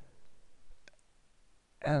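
A single faint computer mouse click a little under a second in, over quiet room noise. Near the end a man's voice starts speaking.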